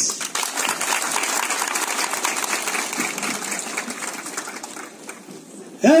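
Audience applauding, many hands clapping in a steady patter that dies away near the end.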